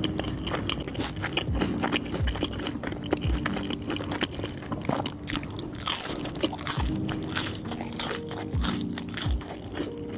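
Close-miked eating: chewing a mouthful of cheeseburger with wet mouth clicks, then, about halfway through, a bite into a crunchy curly fry.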